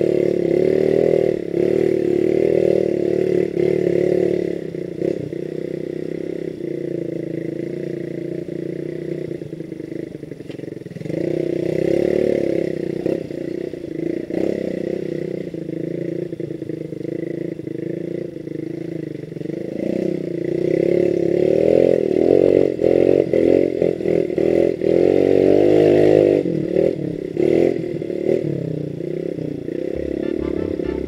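Motorcycle engine running on an off-road climb, rising and falling with the throttle. It is louder in surges near the start, around the middle and for several seconds toward the end, and quieter in between.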